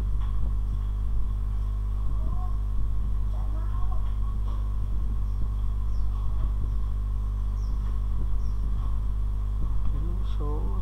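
Steady electrical mains hum, a loud low buzz in the recording, with a few faint, indistinct sounds behind it.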